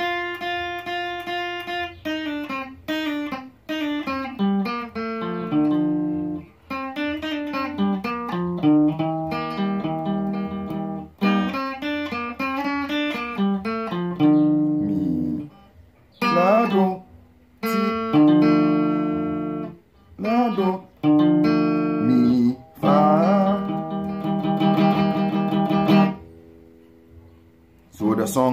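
Stratocaster-style electric guitar picked slowly, one note at a time, playing a highlife melody line: a long unbroken run, then shorter phrases with brief pauses, stopping about two seconds before the end. This is the passage taken as the song's only hard part.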